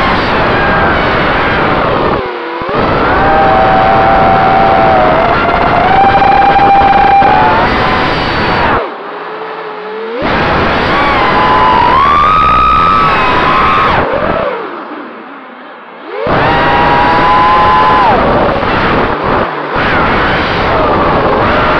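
Brushless motors and propellers of a GE 220 FPV racing quadcopter, heard through its onboard camera microphone: a loud whine whose pitch glides up and down with the throttle. It drops off sharply three times, briefly about 2 s in, then around the 9 s and 15 s marks, and punches straight back up each time.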